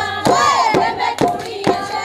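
Women singing a Punjabi boli over the steady hand-clapping of a giddha circle, with no drum.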